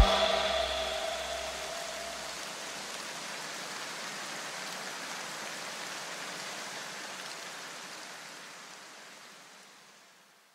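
The end of an electronic dance track: the music stops and its echo dies away over the first couple of seconds, leaving a steady hiss of noise that slowly fades out to silence near the end.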